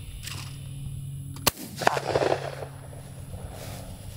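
A single shotgun shot at a clay skeet target, a sharp crack about a second and a half in.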